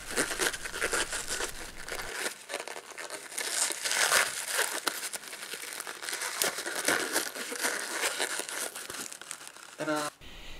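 A rubber balloon stuffed with crumbled expanded polystyrene (icopor) is worked and knotted in the fingers: a dense run of small irregular clicks and rustles from the rubber and the foam bits inside.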